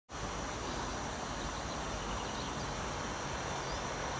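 Steady outdoor background noise, an even hiss without distinct events.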